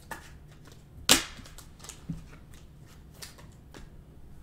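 Trading cards and foil packs being handled on a table, heard as a few sharp snaps and clicks. The loudest snap comes about a second in.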